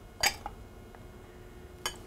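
A metal spoon clinking against glass bowls while flour is spooned from one glass bowl into another: one sharp clink about a quarter second in, then a lighter tap near the end.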